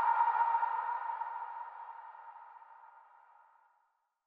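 The final held synthesizer note of an electronic dance track, a steady tone fading out to silence just before the end.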